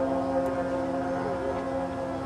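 Marching band's brass holding a long, steady chord.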